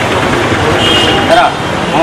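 Steady noise of busy street traffic with people talking close by.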